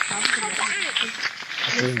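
Footsteps crunching on a gravel track, with snatches of voices. A steady high-pitched whine sounds over them and stops a little past halfway.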